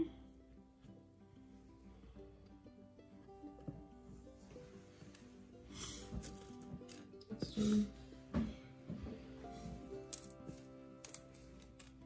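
Soft background music with held notes, under a few faint snaps and clicks of wooden toothpicks being broken off by hand.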